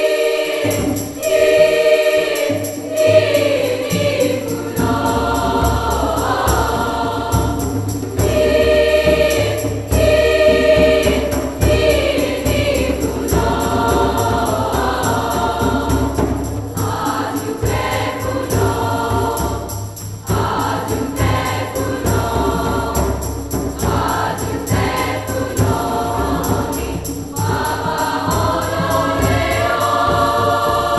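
Girls' treble choir singing in upper-voice parts (SSA) with piano accompaniment, in a large church; a fuller low accompaniment comes in about five seconds in.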